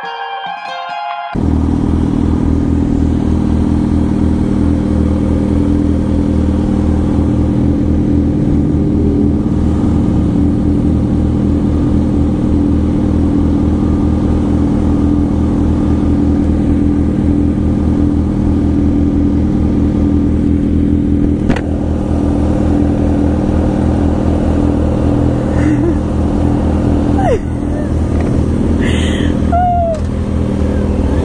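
A short guitar music cue cuts off about a second in. Then a 2006 Kawasaki ZX6R 636's inline-four engine idles steadily at a standstill, with a second sportbike idling alongside. A brief laugh comes near the end.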